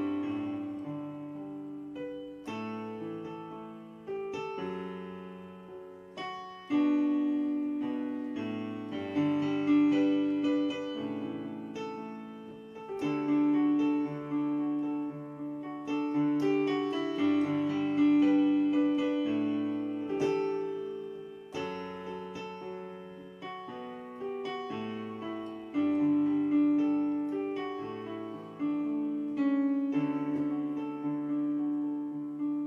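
A piano-voiced keyboard playing slow, sustained chords. Each chord is struck every one to two seconds and dies away before the next.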